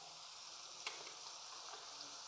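Faint steady sizzle of chopped onion frying in ghee in a kadai, with one light click a little under a second in.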